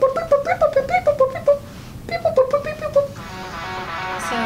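A person singing quick 'beep, boop' syllables in imitation of R2-D2's droid beeps: short pitched notes hopping up and down at about five a second, with a brief break in the middle. Near the end, background music comes in.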